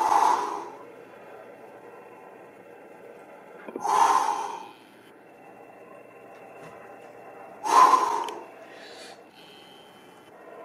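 A man's forceful breaths, three hard exhalations about four seconds apart, as he strains through heavy dumbbell overhead presses.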